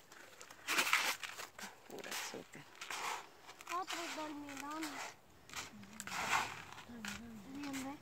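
Quiet, indistinct voices talking, with a few short rustles early on.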